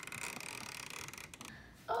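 Gas fireplace lighting: a steady hiss of gas and flame for about a second and a half, with a few faint clicks, then it dies down.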